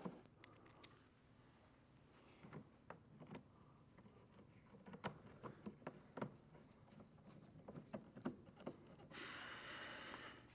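Faint, scattered clicks and scrapes of a screwdriver and plastic fender-liner fasteners being handled and fitted, with a hiss lasting about a second near the end.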